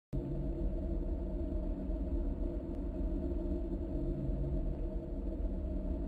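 A steady low rumble with a faint hum, starting suddenly just after the beginning.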